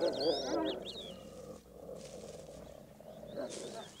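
Grey wolf pups whining and squealing while feeding from their mother, in short high cries that rise and fall, mostly in the first second and again briefly near the end.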